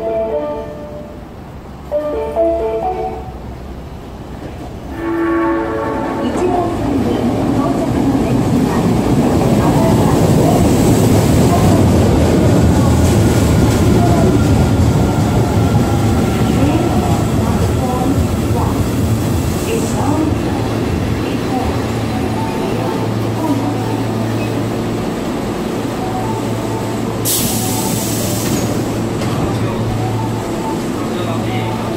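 Osaka Metro Chuo Line 24 series train arriving at the platform. A short horn blast comes about five seconds in, then the rumble of the train running in and braking, loudest mid-way, settling to a steady low hum once it has stopped. Near the end there is a brief burst of air hiss as the doors open.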